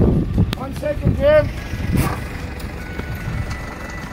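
A 4x4's engine running low and steady, with voices over it.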